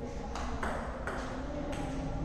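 Table tennis ball striking table and bats: three sharp clicks, the first about a third of a second in, the next soon after, and the last near the end, over a low steady hum.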